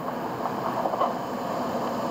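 Steady background noise, an even hiss and hum with no distinct events.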